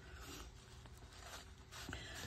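Faint rustling of paper and a tissue being handled, growing a little near the end.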